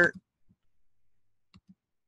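The tail of a spoken word, then two faint computer mouse clicks close together about a second and a half in.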